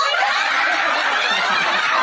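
Several people laughing together, breaking out suddenly and staying loud.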